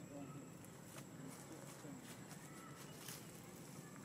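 Faint outdoor ambience: a low murmur with a few sharp clicks and rustles, the strongest about three seconds in, and two brief faint high squeaks.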